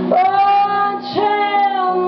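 Female lead vocalist singing two long high held notes, each sliding up into pitch, one near the start and one about a second in, over electric guitar chords in a live rock band.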